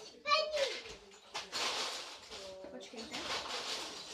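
A girl's voice: a short drawn-out vocal sound a moment in, followed by a longer stretch of hissy, rustling noise with faint bits of voice.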